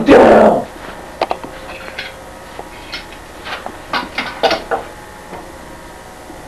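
A man's loud shout in the first half second. Then a quieter stretch broken by a few light knocks and a cluster of short, yelp-like vocal sounds about four seconds in.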